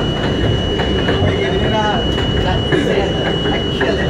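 R42 subway train running on elevated track: a steady loud rumble of wheels and running gear, with scattered short clicks over the rail joints.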